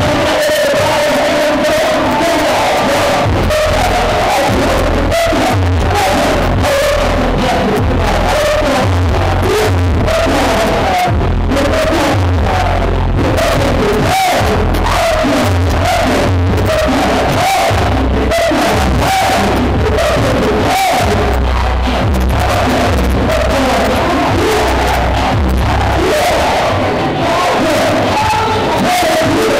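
Hip-hop track played loud over a club sound system, with heavy bass and voices shouting or rapping over it.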